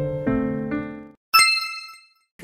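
Soft piano music playing a few notes that fade out just past a second in, followed by a single bright chime-like ding that rings out and dies away.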